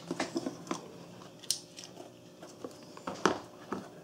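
Scattered light taps and clicks of hands handling a smartphone and its cardboard retail box on a countertop as the phone is lifted out.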